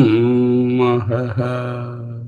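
A man's voice chanting the Sanskrit word 'aham' as a long, held tone. The pitch drops slightly at the start, there is a brief break about a second in, and the voice fades toward the end.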